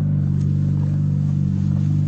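A Honda Civic EK9 Type R's 1.6-litre four-cylinder engine idling steadily, a low even hum with no revving.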